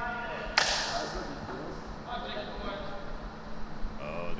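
A single sharp smack about half a second in, with a short hissy tail, over faint voices in a large room.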